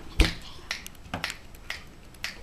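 Fingers snapping several times, about twice a second, the first snap the loudest.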